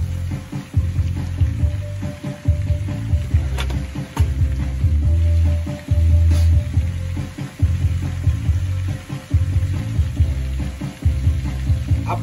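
Background music with a heavy bass, over butter and minced garlic sizzling in a frying pan as the garlic starts to brown, with a few clicks of a metal spoon against the pan.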